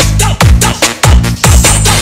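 Electronic dance 'battle mix' music with a heavy kick drum that drops in pitch on every beat, about two and a half beats a second.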